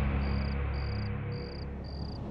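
A cricket chirping in a steady, even series, just under two short chirps a second, over a low droning music bed.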